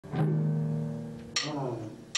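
Electric blues band with harmonica starting to play: a held low note, then a drum and cymbal hit about a second and a half in, after which the notes begin to move.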